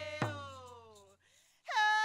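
A woman singing to a hand drum: one last drum beat just after the start, the sung note sliding down and fading, a brief pause, then a loud, high note held steady near the end.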